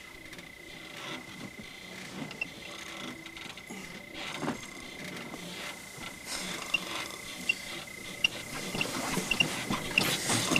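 Faint creaking and knocking of a flimsy wooden house shaken by movement in the next room, with short squeaks repeating about once a second in the second half, over a faint steady high tone.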